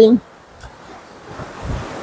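Sea surf and wind heard as a steady hiss, with a low wind rumble on the microphone building near the end. A man's voice trails off right at the start.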